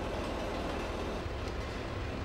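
Road roller running, its steel drum rolling over and compacting a gravel track: a steady low rumble.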